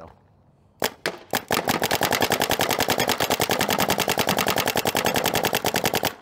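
Field One Force electronic paintball marker firing: a few single shots about a second in, then a rapid, even stream of shots.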